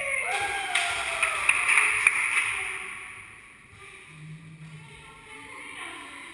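The end of a pop song: the last pitched sound slides downward, then a noisy wash with a few sharp clicks fades out over a couple of seconds, leaving only faint sound.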